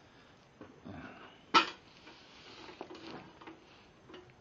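A hand truck's metal frame gives one sharp clank about a second and a half in as it is set down, followed by faint rustling and shuffling.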